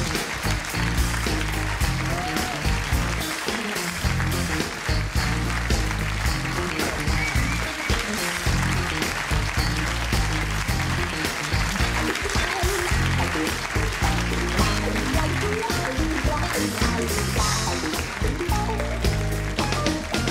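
Live house band playing an upbeat walk-on tune with electric guitars, a bass line and keyboard, over audience applause.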